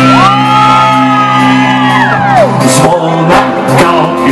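Live pop-rock band playing on a concert stage, with sustained low chords under a long, high held shout or whoop that rises at the start and slides down about two and a half seconds in.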